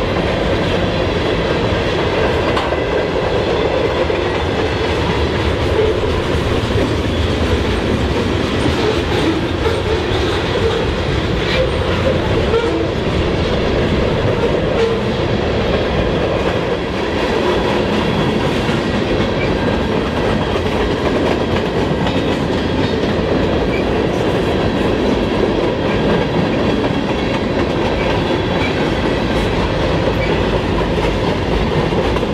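Freight cars of a manifest train rolling past on steel wheels: a steady, loud rumble and clatter of wheels on the rails.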